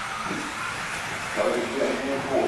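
Electric 1/10-scale 2wd RC buggies with 17.5-turn brushless motors running on an indoor dirt track: a steady whirring hiss. A voice comes in about one and a half seconds in.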